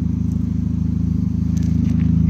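A vehicle engine idling steadily, a low even rumble. There is faint crunching of steps on gravel near the end.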